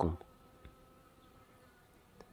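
Bees buzzing faintly at the flowers: a steady, faint hum.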